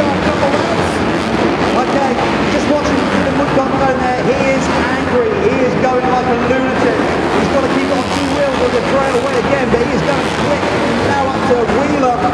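Several motocross bikes racing round a dirt track, their engines rising and falling in pitch over and over as the riders throttle on and off through the turns and jumps.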